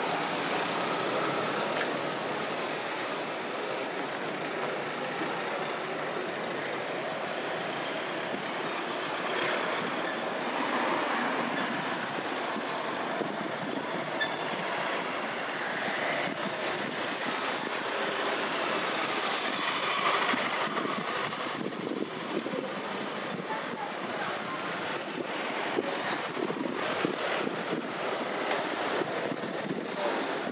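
Street traffic: cars driving slowly past one after another, giving a steady road noise, with small clicks and taps in the last several seconds.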